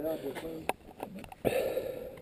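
Men talking in Portuguese, with a sharp click and a brief rustling knock near the end, typical of the action camera being handled.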